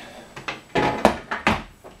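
Plastic controller box and its bundle of plug cords set down on a glass tabletop: a quick run of knocks and clatters, the loudest about a second in.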